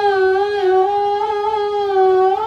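A woman's solo voice holding a long, wordless sung note, unaccompanied, with a slight dip in pitch about half a second in before it steadies again.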